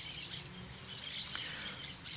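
Steady outdoor background sound with high-pitched bird chirping.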